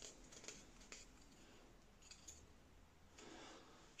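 Near silence with a few faint, light clicks as a small wooden servo mounting plate is handled.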